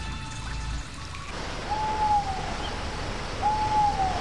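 Two owl hoots about a second and a half apart, each a single held note that drops in pitch at its end, over a steady background hiss.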